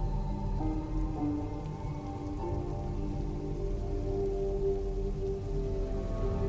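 Steady heavy rain falling, with a soft film score of long held notes over it.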